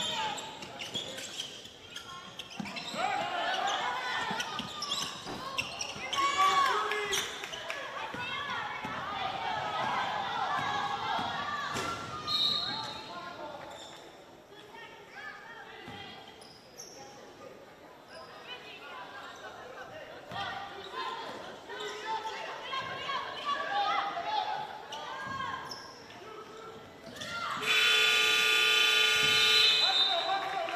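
Basketball dribbling and players' voices echoing in a gym, then near the end a loud, steady gymnasium game horn sounding for about two and a half seconds: the end-of-period horn for the third quarter.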